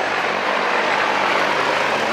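Steady drone of motor traffic.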